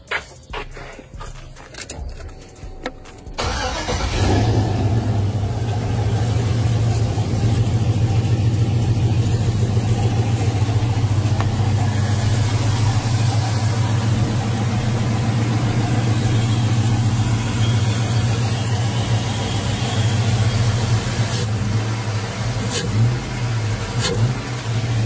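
Box Chevy's Vortec engine being started: a few knocks and clicks, then it catches about three and a half seconds in and runs steadily. It has a newly fitted mass airflow sensor and air filter, replacing a dirty sensor that had made it run sluggishly.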